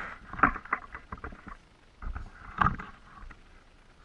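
A quick run of light clicks and knocks, then a louder knock with a brief scrape about two and a half seconds in: handling knocks around a glass reptile enclosure.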